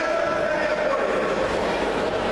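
Steady hubbub of many spectators' voices talking and calling out, blending into a continuous murmur that echoes in a large sports hall.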